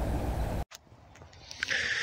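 A steady rumbling noise that cuts off abruptly about two-thirds of a second in, followed by near silence and then a faint hiss.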